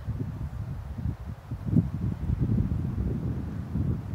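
Wind buffeting the microphone: an uneven low rumble that swells in gusts, loudest a little under two seconds in.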